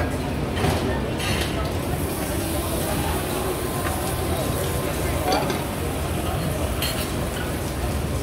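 Busy restaurant din: steady background chatter of diners and staff with clinks of dishes and serving utensils, and a few sharp clicks.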